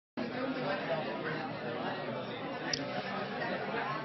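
Many people in an audience talking among themselves at once, a steady indistinct chatter of overlapping voices.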